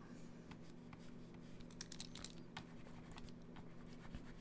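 Faint, irregular clicks and taps from a computer drawing setup, a few a second, over a low steady hum.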